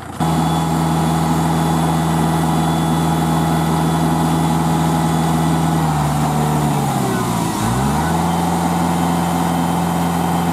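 Kubota L4508 tractor's diesel engine running at raised, steady revs while it powers the hydraulic tipper lifting the loaded trolley bed. The sound comes in abruptly at the start. About six seconds in the engine speed sags and dips sharply, then comes back up to the same steady pitch.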